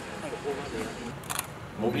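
A camera shutter clicking briefly over faint voices in a hall, about a second and a half in; a man starts speaking just before the end.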